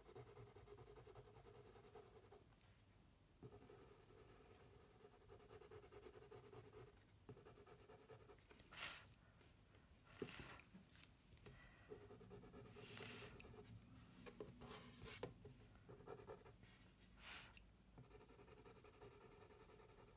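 Coloured pencil rubbing faintly over toothy mixed-media paper as it shades in small circles, with several brief louder strokes in the second half.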